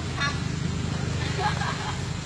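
Short bursts of voices over a steady low background rumble.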